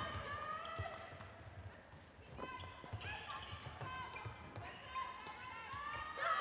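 Live court sound from an indoor netball match: players' voices calling, with dull thuds of feet and ball on the hardwood court.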